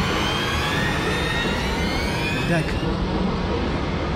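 Steady loud rumble with a whine that slowly rises in pitch, and a brief voice sound about two and a half seconds in.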